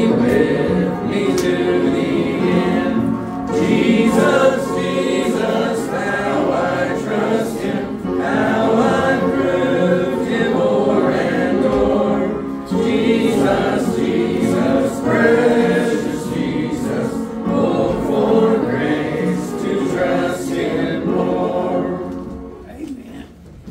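Church congregation singing a gospel hymn together, many voices at once. The singing fades out at the very end.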